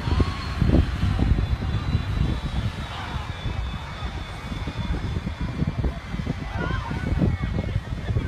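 Wind rumbling on a phone microphone beside a jet airliner on fire after an emergency stop, with a thin high whine that slowly falls in pitch, from its engines. Distant voices call out briefly near the start and again near the end.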